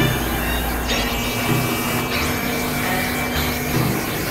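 Experimental synthesizer drone and noise music: a dense, rumbling noise wash over a held low tone, with bass notes shifting about every second and several bright noise sweeps falling from the highs.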